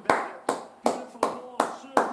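Steady hand clapping: about six sharp claps, evenly spaced at nearly three a second.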